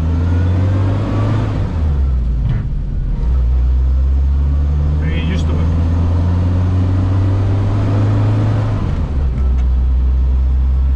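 The 1962 Amphicar 770's rear-mounted Triumph 1147 cc four-cylinder engine running under load as the car is driven, heard from inside the open cabin. Its low note shifts about two to three seconds in and again near the end.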